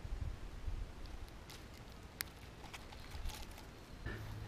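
Wind rumbling on the microphone, with a few faint scattered clicks and taps.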